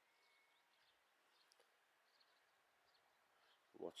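Near silence with a few faint, scattered high bird chirps. A man's voice begins just at the end.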